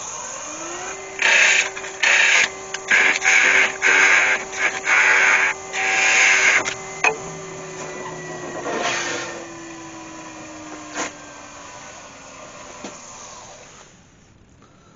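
Nova Galaxi DVR woodturning lathe spinning up, its motor whine rising about half a second in, while a turning tool cuts a hole into a scrap-wood block held in the chuck. The cuts come as a quick series of loud, short passes in the first half. The lathe then winds down, its whine slowly falling in pitch until it stops shortly before the end.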